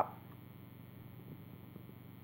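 Quiet room with a low, steady electrical hum, and a couple of faint light knocks about halfway through and near the end as the wooden prop blocks are lifted away from the cookie.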